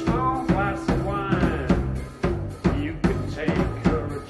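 Live rock trio playing loud: electric guitar and bass guitar over a drum kit keeping a steady beat, with no singing.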